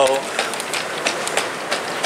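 Plastic shopping cart being pushed, its wheels rolling and rattling over a hard floor with a run of irregular clicks.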